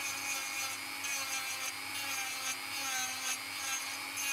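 Dremel 3000 rotary tool running steadily with a sanding drum, sanding the edge off a wood-and-resin carving. A steady motor whine sits under a rasping hiss that comes and goes as the drum touches the piece.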